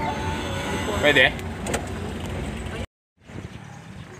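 Steady road and engine noise of a moving vehicle heard from on board. It cuts off abruptly near the end, leaving a brief silence and then a much quieter outdoor background.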